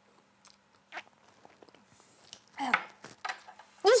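Faint mouth and spoon sounds from children tasting Swedish tube caviar (cod roe spread) off teaspoons, with a short noisy burst about a second in and a brief vocal sound about two-thirds of the way through.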